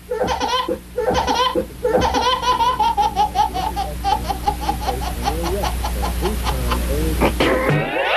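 High-pitched laughter: a long run of rapid 'ha-ha' pulses, about five a second, slowly falling in pitch. It starts about two seconds in and stops just before the end.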